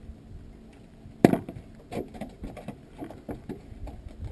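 A sharp knock on a boat about a second in, followed by a string of lighter knocks and taps as fishing gear and the catch are handled aboard.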